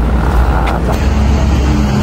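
Busy city-street traffic noise: a steady, loud low rumble of road traffic at a downtown intersection.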